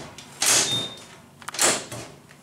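Stainless-steel cabinet door in an elevator's button panel being tugged while it stays shut, giving two short metallic rattling scrapes with a brief high squeak in the first.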